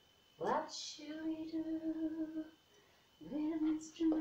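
A woman singing without words: a quick rising whoop about half a second in, then two long held notes, in the manner of a sea shanty.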